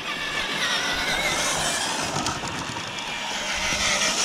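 Scale RC crawler truck with a Bronco body driving: a steady whine from its electric motor and gearbox, the pitch wavering as the throttle changes, over a rushing noise.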